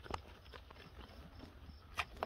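Faint, scattered knocks of goat hooves on wooden pen boards, the clearest just after the start and again at the end.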